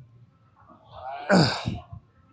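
A man's forceful grunt on the effort of a back-extension rep: one short, breathy exhalation that falls in pitch, a little past halfway through.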